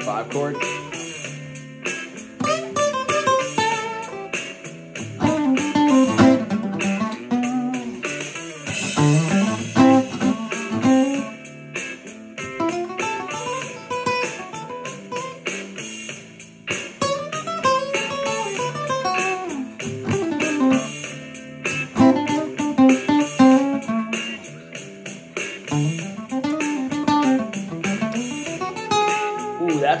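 Acoustic guitar playing a single-note blues lead in A over the chord changes. The lines lean on each chord's own notes as the progression moves, rather than running one scale straight through.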